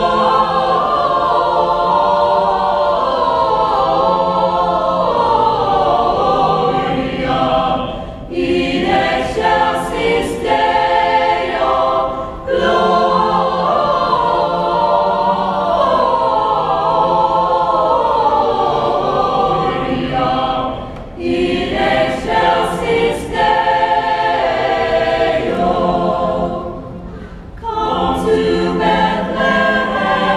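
A choir singing in long phrases, with short breaks between phrases about 8, 12 and 21 seconds in and again near the end.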